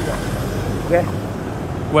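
Street traffic: a steady low rumble of idling and passing motor vehicles, with a man's voice breaking in briefly about a second in.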